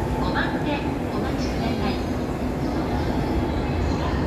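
Steady low rumble of a JR E231-series commuter train running into the platform, with a voice over it.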